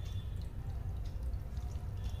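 Water dripping and trickling in a small aquarium over a steady low hum.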